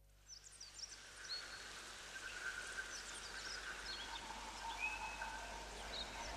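Faint nature ambience: scattered short, quick bird chirps over a soft hiss, with a few held whistle-like tones.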